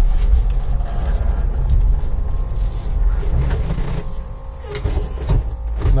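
Cab interior of an electric-converted Puch Pinzgauer on the move: a steady low rumble from the manual transmission and driveline, with no sound from the electric motor itself. A little after the middle the rumble briefly drops off, then a couple of short knocks follow near the end.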